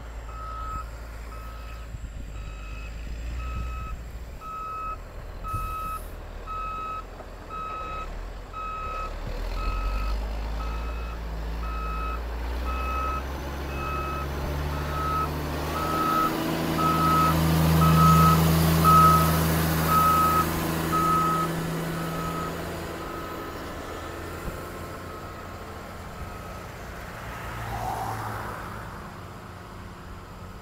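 Caterpillar motor grader's reversing alarm beeping steadily, about two beeps a second, over its diesel engine running. The engine grows louder as the machine passes close, about 18 seconds in, then fades. The beeping stops about 21 seconds in.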